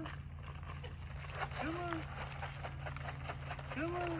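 A kitten clinging to a tree trunk meowing, short single calls that rise and fall, about two seconds apart, with a light scratchy rustle from its claws on the bark in between. A steady low hum runs underneath.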